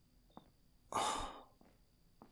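A man sighing: one breathy exhale lasting about half a second, about a second in, with a faint click just before it.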